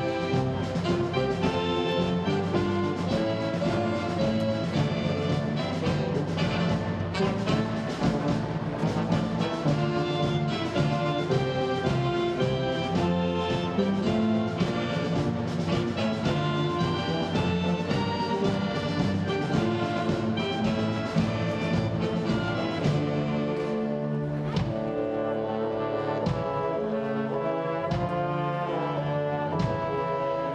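Concert wind band playing a film-score arrangement: brass instruments carrying the melody over a drum kit with cymbal strikes, continuous throughout.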